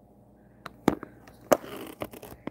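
Handling noise from the camera being moved: a few sharp clicks and knocks, the loudest just under a second in and another about a second and a half in, followed by a short rustle.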